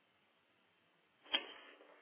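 A single sharp click or knock a little after halfway through, with a short tail fading over about half a second, over faint hiss.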